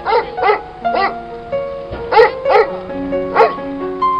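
A dog barking, about six short single barks at irregular intervals, over background music with sustained notes.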